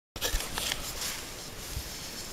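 Light scrapes and rustles from a piece of poplar bark being handled and worked, over a steady outdoor hiss.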